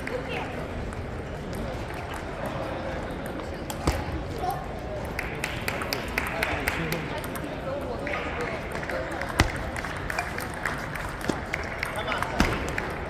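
Table tennis ball clicking off the table and paddles: scattered single taps, then a quicker run of clicks near the end as a rally gets going, over a steady hubbub of voices in a large hall.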